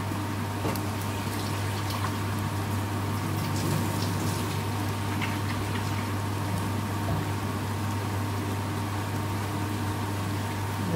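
Sliced onions and spices frying in a metal pan: a steady sizzle and bubbling with scattered small crackles, over a steady low hum.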